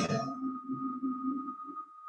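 A quiet, steady high-pitched electronic tone, with a fainter, wavering lower tone under it that fades out about one and a half seconds in.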